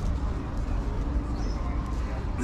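Pedestrian street ambience: faint chatter of passers-by over a steady low rumble, with a short high chirp about one and a half seconds in.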